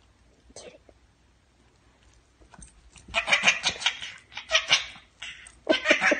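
A baby laughing and squealing in short repeated bursts, starting about three seconds in after a near-quiet start.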